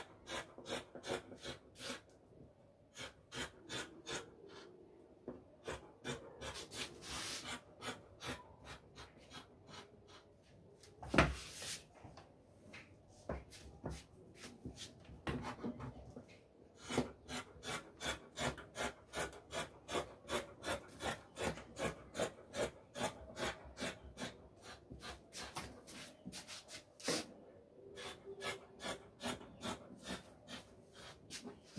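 Scissors snipping through fabric, short crisp cuts at about two to three a second, with a brief lull and one loud knock about eleven seconds in.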